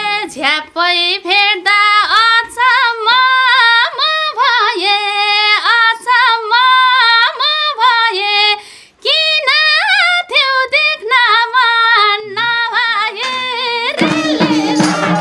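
A woman singing a Nepali folk song solo and unaccompanied, holding and bending long notes, with a short break about nine seconds in.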